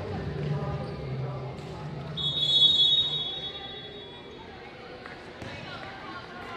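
Referee's whistle: one steady, shrill blast lasting about a second, near the middle, which in volleyball signals the server to serve.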